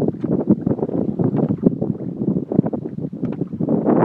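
Wind buffeting the microphone in uneven gusts aboard a slowly trolling fishing boat, with a steady rush of boat and water noise underneath.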